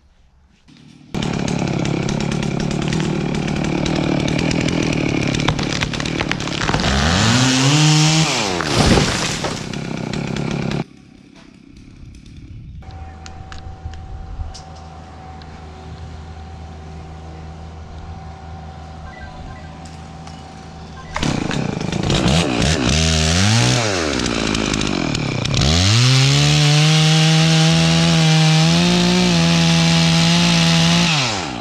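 Stihl chainsaw cutting into a tree trunk at full throttle, its pitch dropping sharply and climbing back twice as it bogs in the cut. The uploader puts the slow cutting down to very wet wood clogging the saw. Between the two loud stretches is a quieter, steady engine sound.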